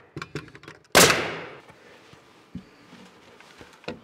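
Bostitch pneumatic nailer firing one nail into plywood siding about a second in: a single sharp shot that dies away over about a second, with a few faint clicks around it.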